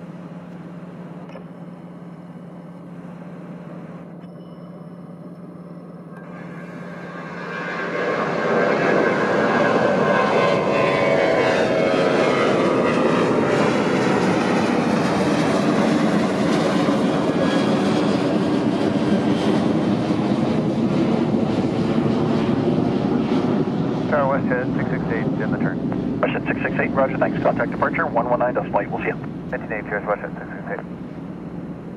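A British Airways Boeing 787's Rolls-Royce Trent 1000 jet engines while it taxis. The engine noise swells sharply about eight seconds in and stays loud, a dense roar with whining tones that sweep up and down in pitch.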